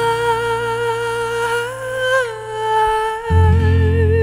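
Music: a wordless female vocal note, hummed and held long, rising briefly about halfway and then wavering with vibrato, over a low steady instrumental accompaniment. A new, louder low chord comes in near the end.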